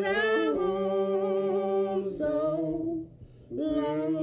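Unaccompanied singing voice holding long, wavering notes with no clear words, breaking off briefly about three seconds in.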